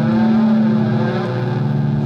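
Electric guitar holding a sustained chord that rings on steadily.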